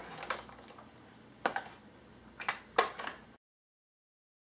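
Sharp clicks and taps of hard plastic gear being handled, several of them, some in quick pairs, then the sound cuts off abruptly to dead silence a little over three seconds in.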